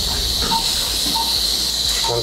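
Steady hiss over a low hum, with no speech.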